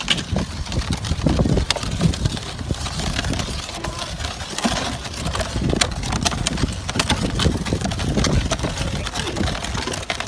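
Small wooden cart drawn by two rams rolling over a dirt road: a rumble with irregular knocks from its solid wooden wheels and the animals' hooves.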